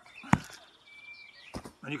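A single sharp slap of contact as the attacker's striking arm is met and he is pushed over sideways, about a third of a second in. A short high bird chirp follows about a second in.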